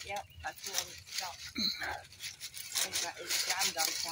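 Rustling and scraping in dry leaves and vines along a chain-link fence while a snapping turtle is worked free, under quiet talking.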